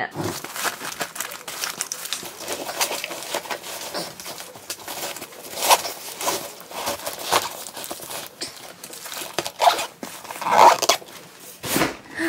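Black nylon kit bag and its packed cases being handled and stuffed: fabric rustling with many small irregular clicks and knocks, a few louder ones about halfway through and near the end.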